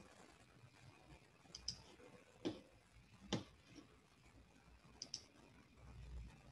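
A handful of faint, separate computer mouse clicks over near-silent room tone.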